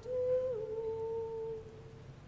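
A single voice chanting Latin plainchant, holding one note that steps down slightly about half a second in and fades out after about a second and a half.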